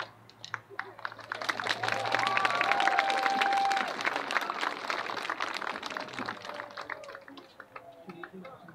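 Audience applause starting right as the marching band's music ends, building over the first couple of seconds and then dying away, with a single pitched cheer heard over it about two seconds in.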